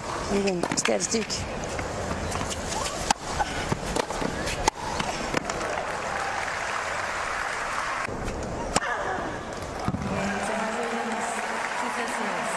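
Tennis point on a hard court: a string of sharp racket-on-ball hits and ball bounces over steady crowd noise, the hits stopping after about nine seconds.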